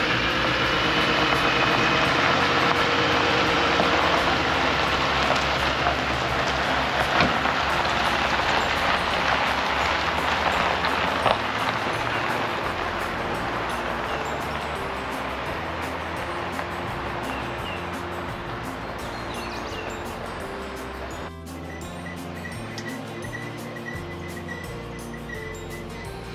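A pickup truck towing an Airstream travel trailer drives off over gravel, its sound fading steadily as it pulls away until it cuts off about 21 seconds in. Background music plays throughout.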